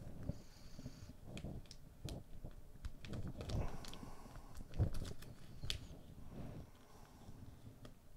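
Quiet handling of a paper sticker sheet and instruction booklet: soft rustling with scattered light clicks and taps, and near the end fingers picking at an old sticker to peel it off the sheet.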